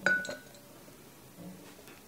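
Banana pieces dropped into a glass blender jar holding dry dog food kibble: a sharp clink with a short ring, then a lighter knock.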